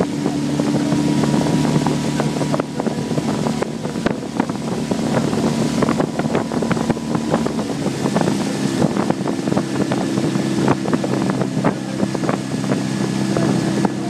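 Outboard motor of a boat pacing the rowers, running steadily with an even drone; its note shifts slightly about two and a half seconds in and again around eight seconds in, with scattered crackles over it.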